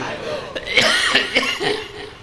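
A man coughing, a few quick coughs in a row close to a microphone.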